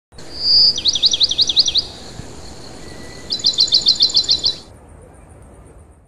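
A songbird sings two quick phrases of repeated high notes, each note sliding down in pitch, the second phrase faster than the first. Between the phrases is a soft background hiss, and near the end there is a faint, even, high pulsing.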